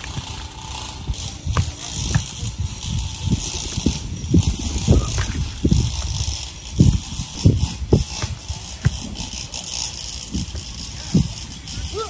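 Wind buffeting an outdoor microphone: irregular low rumbling thumps, about a dozen and strongest in the middle, over a steady high hiss.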